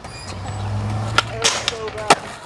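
Skateboard wheels rolling over pavement with a low, steady hum, then several sharp clacks of the board's tail popping and its wheels and deck striking hard surfaces in the second half.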